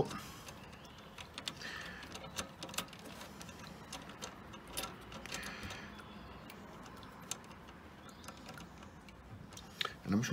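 Faint, irregular small metallic clicks and ticks as the knurled adjusting nut is turned by hand on the threaded spindle of a Suttner ST261 pressure washer unloader valve.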